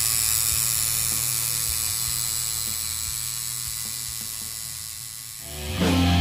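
Electric tattoo machine buzzing steadily, fading away about five seconds in. Heavy metal guitar music starts near the end.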